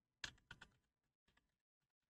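A few faint keystrokes on a computer keyboard as digits are typed.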